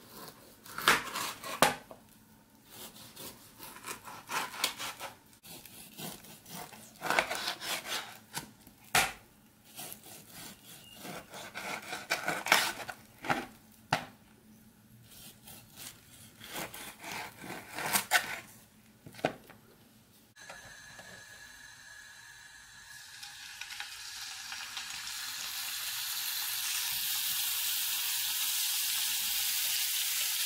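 A kitchen knife cutting through raw pork ribs on a cutting board: irregular sawing strokes and sharp knocks of the blade on the board. About two-thirds of the way through, this gives way to pork ribs sizzling in hot oil in a frying pan, a steady hiss that grows louder over a few seconds and then holds.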